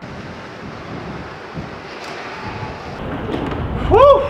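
Wind rumbling on the microphone outdoors, a noisy haze that grows slowly louder. Right at the end a short pitched sound rises and falls once.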